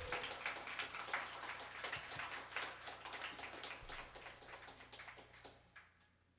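A small audience clapping after a song ends, the applause thinning and dying away over the last couple of seconds.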